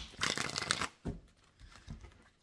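Tarot cards shuffled by hand: a papery rustling burst in the first second, then a short, fainter one near the end.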